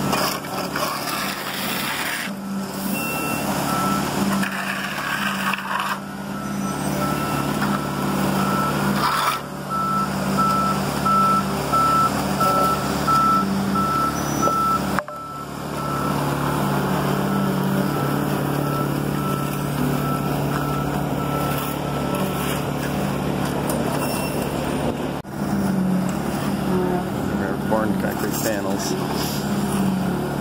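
A concrete mixer truck's diesel engine running steadily while concrete is poured down its chute, with a reversing alarm beeping at an even pace through the first two-thirds.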